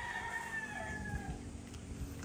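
A rooster crowing: the long, drawn-out last note of the crow, held and then falling away about a second and a half in. A low rumble of wind on the microphone runs underneath.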